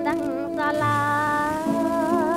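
A woman sings a long held note in a live 1950s-song medley, over steady instrumental accompaniment with a low sustained bass note.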